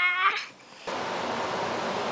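A toddler's drawn-out, wavering high-pitched vocal sound trails off about half a second in. After a brief dip, a steady hiss of room noise follows.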